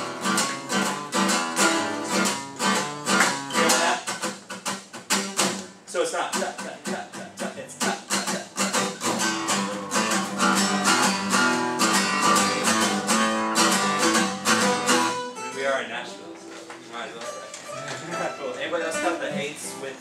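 Acoustic guitar strummed fast in steady, loud strokes, dropping to softer playing about fifteen seconds in and building up again near the end: strumming with dynamics.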